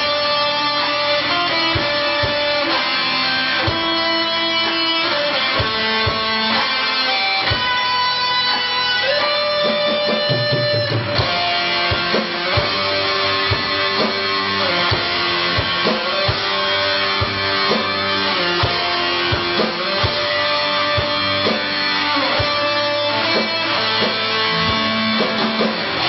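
Live rock band playing a blues number on two electric guitars and drums. The lead guitar holds long melodic notes over steady drum hits, and about eleven seconds in the band comes in fuller and denser.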